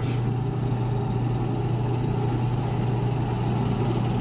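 Benchtop drill press running with a steady hum while its spade bit is fed down, boring into a wooden board.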